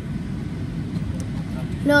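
Steady low rumble of an airliner cabin, the even noise of the engines and rushing air. A voice starts just before the end.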